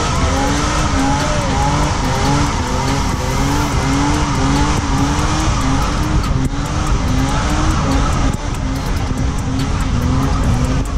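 A car doing a burnout: the engine held at high revs while the spinning tires squeal and the engine's pitch wavers up and down about twice a second.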